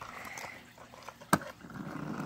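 A small toy monster truck set down on a hard surface, one sharp click about a second and a half in, with faint handling rustle around it.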